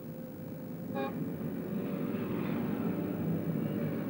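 Street traffic noise, growing a little louder, with a brief car-horn toot about a second in.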